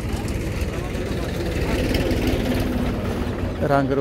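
A steady, low engine rumble.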